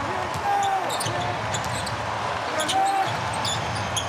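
Basketball being dribbled on a hardwood court during play, with a few short, distant calls from voices on the court over a steady low arena background.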